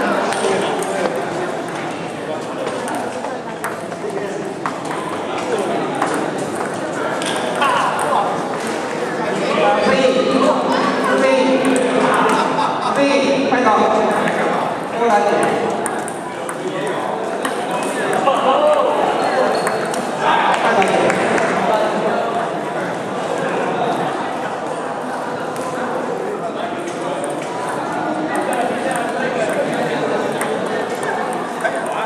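Table tennis balls clicking off bats and tables in quick irregular succession, several rallies going on at once, over background voices.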